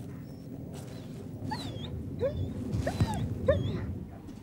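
German Shepherd police dog whining: about five short rising-and-falling whimpers in the second half, over a steady low rumble.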